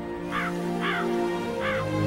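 A crow cawing three times over sustained, slow soundtrack music.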